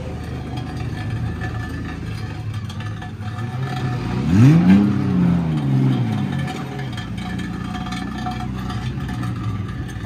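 Car engines running at low speed, with one engine revving up and back down about four and a half seconds in, the loudest moment.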